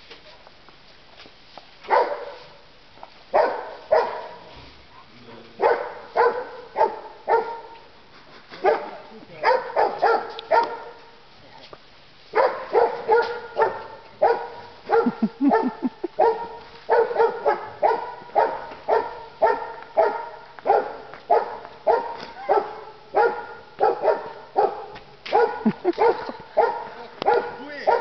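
A dog barking repeatedly: scattered runs of short barks at first, then a steady string of barks about twice a second from roughly halfway through.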